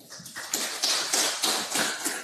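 A dense patter of small taps and rustling that builds about half a second in and stays up for the rest of the stretch.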